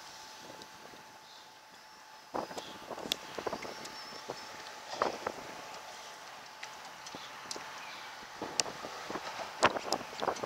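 Irregular knocks, taps and clicks from an angler shifting on the bow of an aluminum fishing boat while fighting a hooked bass, over light wind noise on the microphone. The first two seconds are quieter, and the sharpest knock comes near the end.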